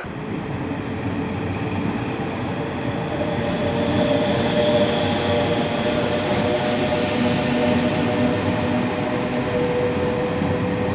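InterCity passenger train of coaches running past along the platform road: a steady rumble of wheels on rail with a steady hum over it, swelling a little about four seconds in.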